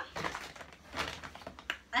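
Brown paper shopping bag rustling and crinkling in irregular bursts as a hand rummages inside it and pulls out a jar.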